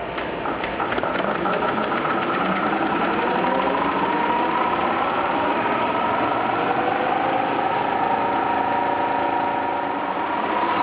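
Servo-driven label die-cutting and rewinding machine starting up. A few clicks come right at the start, then a whine from the servo drives rises in pitch as the web accelerates, settling into a steady running whine at speed.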